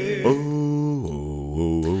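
Male voices singing gospel harmony a cappella, holding low notes and moving to a new chord about a second in.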